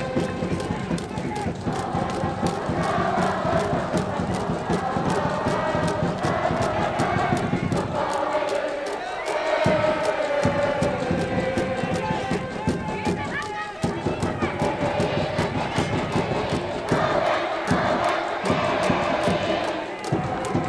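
Cheering section in the stands at a Japanese high-school baseball game: a brass band playing a cheer melody over steady drum beats, with the crowd chanting along.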